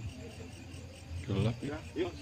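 Crickets chirring steadily at night, with a person's voice breaking in briefly past the middle.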